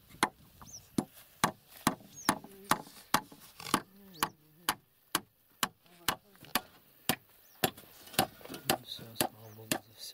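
A hatchet chopping repeatedly into grassy, turf-covered ground, about two sharp blows a second.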